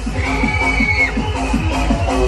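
Loud electronic dance music from the waltzer's sound system: a fast pounding beat of deep falling-pitch kicks, about four a second. A high held tone rises and falls over the first second.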